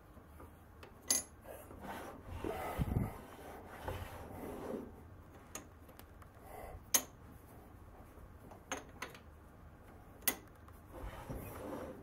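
Cast-iron lathe tailstock being handled: its clamp lever swung and the tailstock worked on the bed ways, giving scattered sharp metal clicks and low scraping rubs, with the loudest clicks about a second, seven seconds and ten seconds in.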